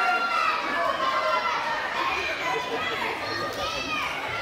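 Crowd chatter: many people talking at once with children's voices among them, no single voice standing out.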